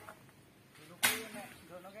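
A single sharp chop into wood about a second in, fading quickly, with men's voices around it.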